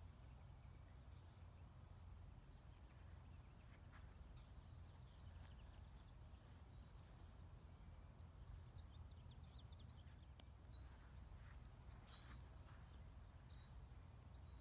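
Near silence: faint open-air ambience with a low steady rumble and a few faint bird chirps about eight to nine seconds in.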